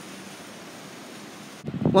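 Steady, even outdoor hiss of breeze and distant surf. A man's voice starts just before the end.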